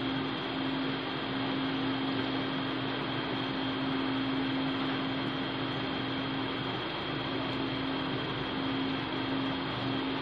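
A steady electrical hum over an even background noise, unchanging, with no clear knocks or scrapes.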